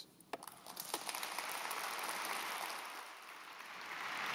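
Large audience applauding: dense clapping that builds up within the first second, holds, and eases slightly near the end.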